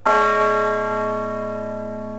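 Church bell struck once, then ringing on with many overlapping tones that fade slowly.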